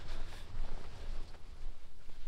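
Handheld outdoor sound of a hiker walking with a heavy backpack: an uneven low rumble on the microphone with soft rustling and faint steps.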